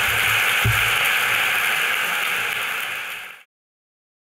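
Audience applauding, with one low thump about half a second in; the applause cuts off suddenly near the end.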